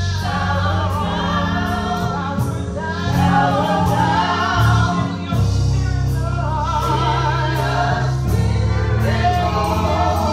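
Live gospel singing: a woman sings lead into a microphone with a wavering vibrato, joined by other singers, over sustained low bass notes and a steady beat of cymbal strokes.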